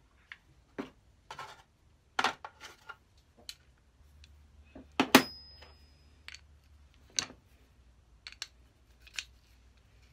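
Small metal parts of a combination plane (cams, nuts and fittings) clicking and clinking against each other and the plane body as they are handled and fitted, in about a dozen irregular knocks. The loudest, about five seconds in, rings briefly like struck steel.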